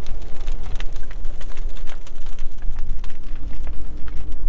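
Brush pile fire of dead trees and branches crackling with scattered sharp pops, under a loud, steady rumble of wind on the microphone.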